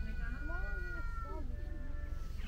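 A high, drawn-out animal cry lasting over a second, with wind rumbling on the microphone.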